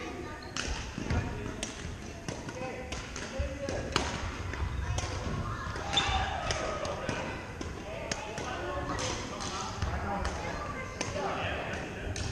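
Scattered sharp smacks and thuds of badminton play in a large gym: rackets hitting shuttlecocks and shoes on the wooden floor, from this and neighbouring courts, under background voices.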